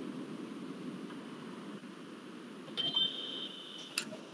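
Steady low background noise of an open room microphone, with a high, steady electronic beep lasting about a second near the end, followed by a click.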